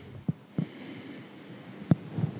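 Faint breathing of a patient taking a breath on request during liver palpation, with three soft clicks.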